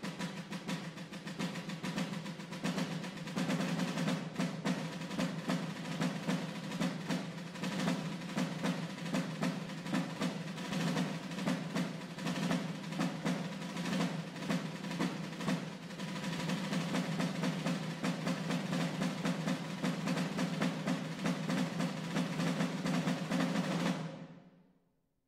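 Rope-tensioned field drum played with wooden sticks: a fast, dense passage of strokes and rolls that builds from soft to loud over the first few seconds, holds, and stops abruptly at the end.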